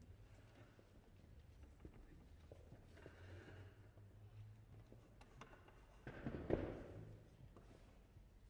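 Near silence in a large hall: quiet room tone with a few faint small knocks, and one brief louder noise about six and a half seconds in. No music is playing yet.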